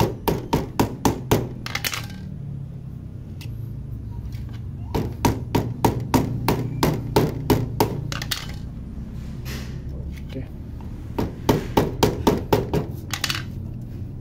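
A hammer tapping a new rubber footrest onto a Honda Wave 100 footpeg. The sharp strikes come about four a second, in three runs with pauses between them.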